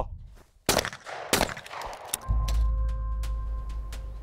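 Two shotgun shots fired in quick succession, about two thirds of a second apart, as in a skeet double, each trailing off in a short echo. About two seconds in, background music with a steady deep drone and held tones comes in.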